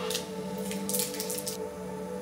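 A few short, scratchy rustles of hands handling a small adhesive strip at a bicycle's handlebar stem: one at the very start, then a quick run of them around the middle. Steady background music plays under them.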